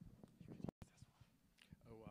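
Faint, indistinct speech, quiet enough to be near silence, with the sound cutting out completely for an instant just under a second in.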